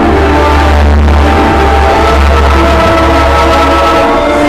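Live concert music played loud over an arena sound system: a deep bass note comes in at the start and holds under several sustained higher tones.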